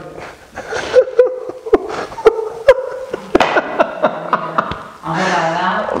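A man laughing in uneven bursts, with several sharp clicks among the laughter.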